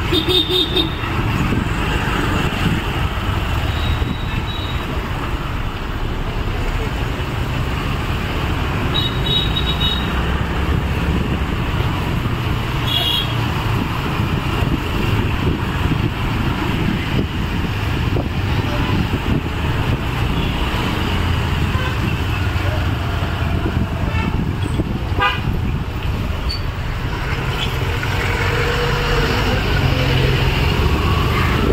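Busy street traffic with the steady rumble of motorbike, auto-rickshaw and car engines close by. There are a few short horn toots, the clearest near the start and around nine and thirteen seconds in.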